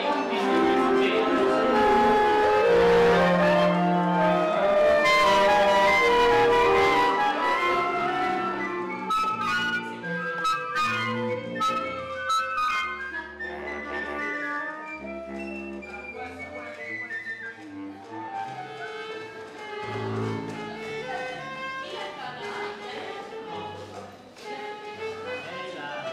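Orchestral music, full and fairly loud for the first eight seconds or so, then thinning out to quieter, separate short notes with a low line underneath.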